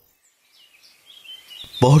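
After a moment of silence, faint bird chirps fade in as a morning-birdsong sound effect. A man's narrating voice comes in near the end.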